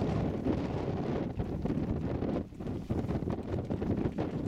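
Wind buffeting the microphone as a steady low rumble, easing off briefly twice.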